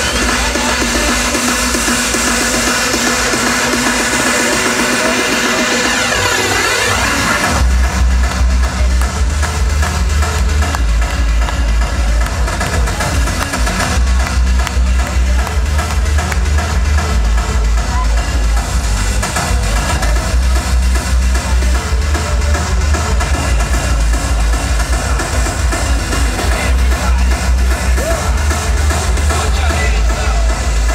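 Hardstyle DJ set played loud over an arena sound system, heard from the crowd. A build-up with a rising sweep gives way, about eight seconds in, to a heavy bass kick drum that pounds steadily through the rest.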